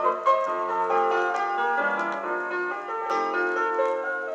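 Solo acoustic piano playing the introduction to a parlour song, a steady run of chords and melody notes, played back from a vinyl record.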